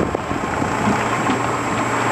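Small boat's motor running steadily with a low hum, under wind noise on the microphone and the wash of open water.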